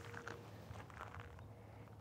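Near quiet: a faint steady low hum with a few faint, light clicks.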